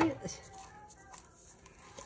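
A woman's voice trailing off, then quiet room tone with a few faint clicks.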